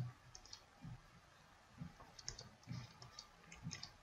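Faint, irregular clicks and taps of a stylus on a tablet screen as handwriting is drawn.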